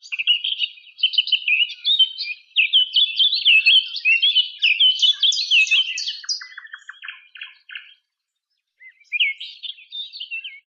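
A songbird singing a long, fast run of chirps and slurred whistles, breaking off briefly near the end and then starting again.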